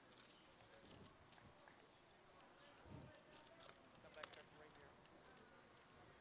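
Near silence: faint outdoor ballpark background, with a few soft, brief sounds about three and four seconds in.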